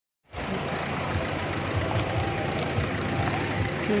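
Steady city street noise: passing traffic and people moving about around a parked car.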